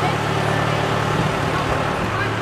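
Steady low engine drone from the vehicle pulling a hayride wagon, heard from aboard the moving wagon, with faint voices in the background.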